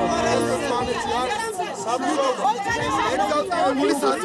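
Several voices talking over one another in a heated exchange, a man and a woman face to face. The tail of music fades out in the first second.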